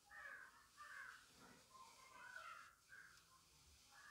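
Near silence with a few faint, short bird calls in the background.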